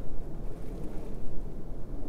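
Wind buffeting a clip-on microphone: an uneven low rumble that rises and falls.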